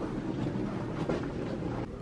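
Steady rushing background noise of a hotel corridor, with faint scuffs of someone walking on carpet while carrying a handheld camera.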